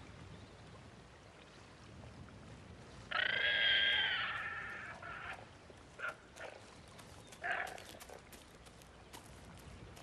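A drawn-out animal call about three seconds in, lasting about two seconds, followed by two short calls, over a faint steady hiss.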